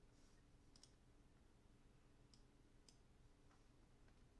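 Near silence: room tone with a few faint, sharp clicks of a computer mouse, spaced irregularly through the quiet.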